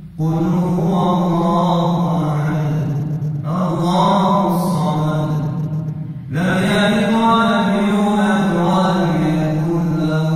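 A man chanting Islamic religious recitation solo, in long drawn-out melismatic phrases. He breaks off for a breath about six seconds in.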